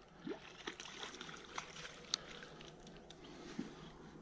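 Faint sounds of a spinning reel being wound while a hooked golden perch is played in: scattered light clicks and handling noise, with a short high squeak about two seconds in.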